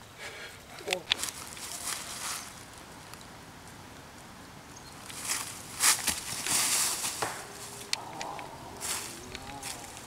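Footsteps crunching through dry fallen leaves during a disc golfer's run-up and throw, loudest from about five to seven and a half seconds in, with a few sharp clicks afterwards.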